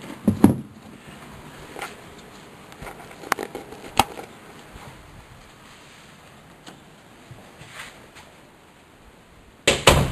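Scattered sharp clicks and knocks of things being handled while someone moves about, the sharpest about four seconds in, with a louder thump about a second before the end.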